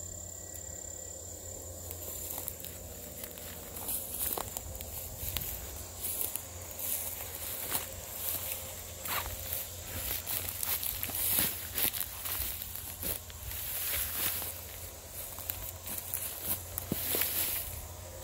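Footsteps through dry, freshly mown grass and brush, irregular steps and rustling starting about two seconds in.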